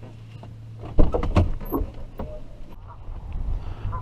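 A sharp click about a second in, then gusty wind buffeting the microphone as a low rumble, with a few more clicks and handling knocks.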